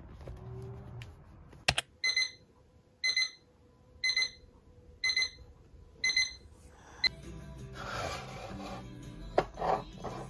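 Alarm clock beeping: five short high-pitched beeps about one a second, cutting off about seven seconds in. Rustling follows.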